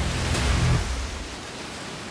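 A rushing whoosh of noise that fades away, with a deep bass note under it that stops a little under a second in.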